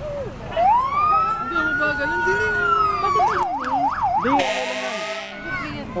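An emergency vehicle's electronic siren winding up into one long held wail, then switching to four quick yelps, followed by a harsh blast of about a second, like a horn.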